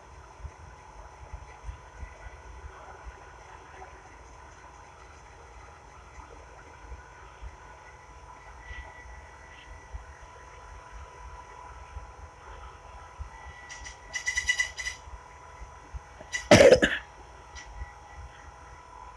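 Quiet room background with a faint steady hum, broken about fourteen seconds in by a brief rapid trill of clicks and, near the end, by a single short loud cough from the person holding the phone.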